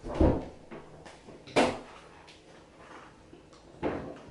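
A few separate knocks and bumps, the loudest just after the start and another sharp one about one and a half seconds in, as a roll of toilet paper is grabbed.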